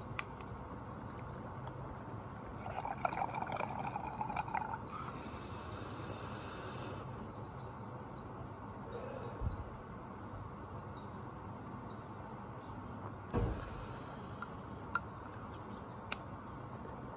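Water bubbling in a glass bong as a hit is drawn, for about two seconds a few seconds in, followed by a short high hiss. A single thump comes near the end.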